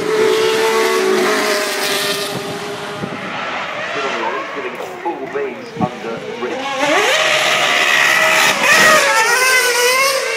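Formula 1 car's engine at high revs: a steady note at first, then revs rising and falling in quick blips, then accelerating with the pitch climbing and getting louder as the car comes close, loudest near the end.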